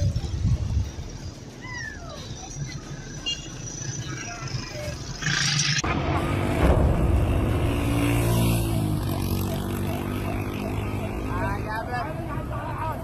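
Outdoor ambience with a few short chirps and a low rumble. About halfway in it switches abruptly to a louder scene where a motor vehicle's engine runs steadily under people's voices.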